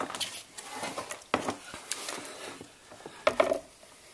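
Handling noises: a few short knocks and rubbing as a portable band saw and a cast aluminium differential housing are moved and fitted together, with the saw not running. The two loudest knocks come about a second and a half in and near the end.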